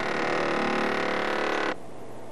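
Compressed-air blow gun releasing a blast of air: a loud hiss with a strong buzzing tone in it, cutting off suddenly near the end.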